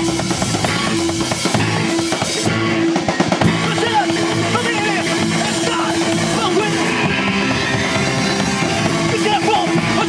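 Punk band playing live: distorted electric guitars, bass and drum kit at full tilt, with sung vocals coming in about four seconds in.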